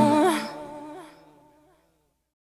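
The end of a backing song: a held, wavering vocal note, sung or hummed, fades out over about a second and a half into silence.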